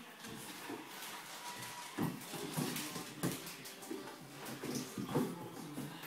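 A Labrador puppy and a cat play-fighting on a wooden floor: irregular scuffling and paw and claw scrabbles, with a few louder bumps from about two seconds in.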